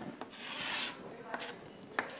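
Chalk scraping across a chalkboard as lines are drawn: a longer stroke early on and a shorter one later, with a sharp tap of chalk on the board at the very end.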